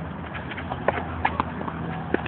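Tennis ball on racket strings and bouncing on the court during volley practice: several sharp pops at uneven spacing, the loudest a little under a second in, over a steady low hum.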